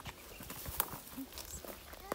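Footsteps on a dry dirt trail strewn with dry leaves and twigs, an irregular scatter of scuffs and clicks.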